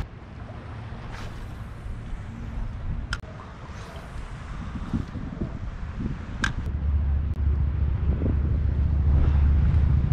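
Wind buffeting the microphone, a low rumble that grows much stronger about seven seconds in, over choppy water lapping around a wading angler. A couple of sharp clicks come through in the middle.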